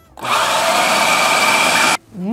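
Electric food processor running at steady speed, its motor whining as it blends condensed milk with Oreo cream filling. It starts just after the beginning and cuts off abruptly near the end.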